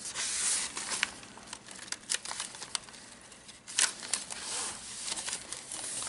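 Paper and card rustling and crinkling as the pages and fold-outs of a handmade junk journal are handled and turned, with scattered small clicks and taps.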